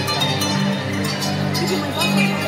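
Loud amplified music for a stage dance performance, with held bass notes under a dense mix.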